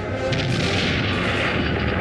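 Booming blast sound effects, cannon fire or explosions, with music, from an animated film trailer's soundtrack.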